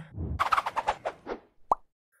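Logo-transition sound effect: a quick run of taps that fades out over about a second, followed near the end by a single short pop, a plop.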